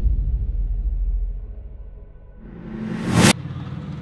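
Title-card transition sound effects: a sudden deep boom that fades into a low rumble, then a rising whoosh that builds for about a second and cuts off sharply near the end.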